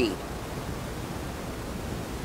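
Steady, even hiss of church room tone and the recording chain, with the last spoken word dying away at the very start.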